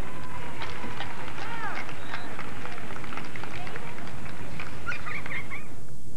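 Scattered distant shouts and calls from players and spectators at an outdoor soccer game, over a steady noisy background with occasional short clicks.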